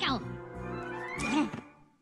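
A Minion's high cartoon voice singing nonsense words over background music, with a long rising note about a second in before everything fades out.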